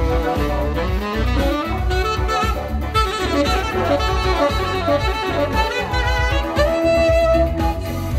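A saxophone plays a gliding, ornamented melody over a disco backing track with a steady bass beat.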